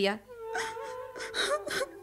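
A young woman crying, whimpering and sobbing in short broken fits.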